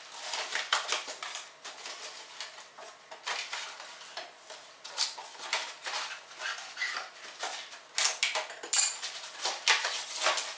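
A wooden dresser and its hinged flaps knocking, rattling and scraping as a person climbs through it: a long run of irregular knocks and clatters, loudest near the end.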